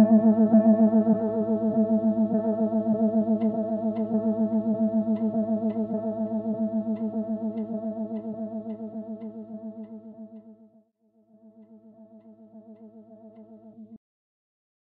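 Music: a single held chord pulsing with a rapid tremolo, slowly fading, dropping out for a moment about eleven seconds in, then returning quieter and stopping abruptly at the end.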